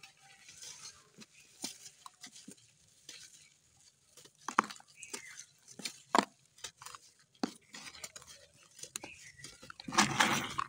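Dry, hard clay soil lumps being crumbled and crushed by rubber-gloved hands: irregular crackles and sharp clicks of breaking clods and loose grit, with a few louder snaps about halfway through.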